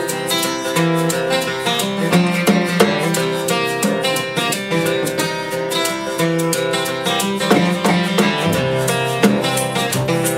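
Live acoustic band playing an instrumental passage: two steel-string acoustic guitars strumming a steady rhythm, with an upright bass and a snare drum keeping time.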